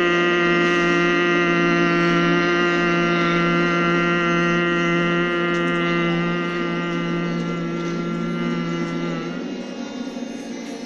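A group of children humming together in one long, steady, unbroken note: the 'mmm' of bhramari (humming-bee) breathing. The hum fades over the last few seconds and stops about a second before the end.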